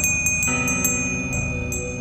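A small handbell rung over and over in a string of sharp, high ringing strikes. Low sustained notes of eerie music come in underneath about half a second in.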